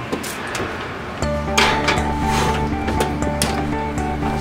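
Background music comes in about a second in. Over it come a few metal clinks and knocks as a metal cake pan is slid onto a wire oven rack.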